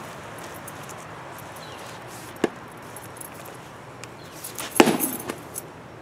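Knocks and clinks from handling a heavy fire axe, with a bunch of keys on a belt loop jangling. There is one sharp knock about two and a half seconds in and a louder cluster of knocks near five seconds.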